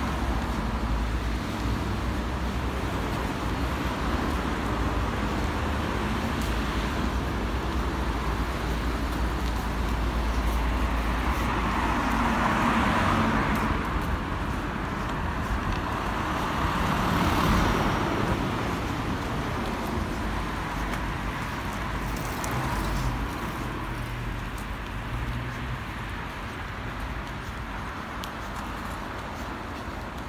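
Street traffic: a steady hum of road traffic with a low rumble, and two cars passing close, each swelling up and dying away, about twelve and seventeen seconds in.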